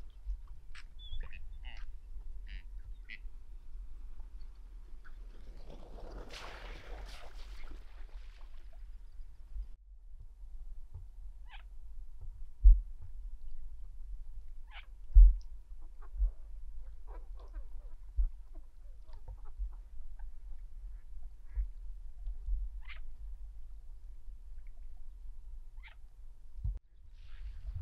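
Ducks on the water calling with scattered short quacks over a steady low rumble. A brief rush of noise comes about six seconds in, and two loud low thumps come about halfway through.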